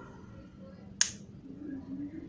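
A single sharp click about a second in: the plastic housing of a Xiaomi Redmi Note 5A snapping together as the phone is pressed closed during reassembly.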